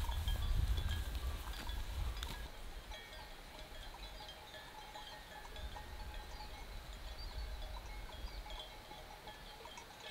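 Bells on a grazing flock of sheep clinking irregularly, with many short small tones at several pitches overlapping. A low rumble sits under them during the first two seconds.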